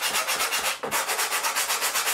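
Sanding block with fairly worn 80-grit sandpaper rubbed quickly back and forth over a balsa wingtip, about eight even strokes a second with a brief break just under a second in. The strokes are taking down high spots at the tip until they sit flush with the wing's end profile.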